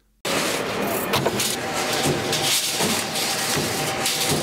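Steel roll-forming plant floor noise: machinery running steadily, with light clicks and clatter of steel strip being handled. It starts abruptly after a moment of silence.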